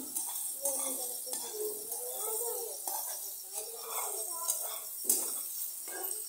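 Indistinct voices talking, with a spatula scraping and knocking now and then in a frying pan of beaten egg and tomato; a sharp knock about five seconds in.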